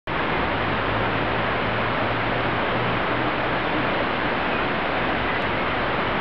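Shallow rocky stream running over stones: a steady, even rush of water.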